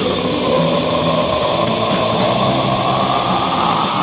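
Raw, lo-fi black metal demo recording. A long harsh, noisy sustained sound rises slightly in pitch over the band, between strummed guitar passages.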